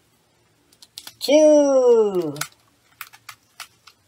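A man's wordless vocal cry, about a second long, with its pitch falling away, then a few light clicks near the end as rubber bands are stretched and snapped onto an apple.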